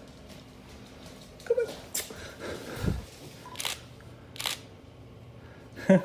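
Three short, sharp clicks spaced about a second apart, with a soft low thud between the first two.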